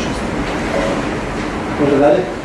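Steady room noise with two brief fragments of voices, one a little under a second in and one near the end.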